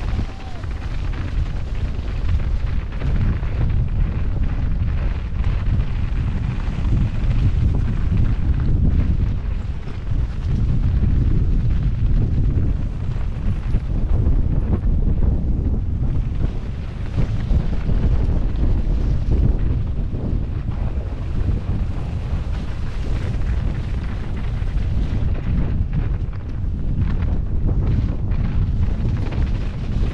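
Heavy wind buffeting on an action camera's microphone while a mountain bike rides fast downhill over snow and grass, a continuous low rumble that swells and eases, mixed with the bike's riding noise.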